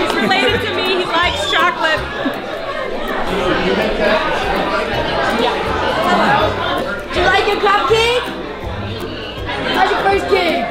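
Many people chatting at once in a crowded room, over background music with a low bass line.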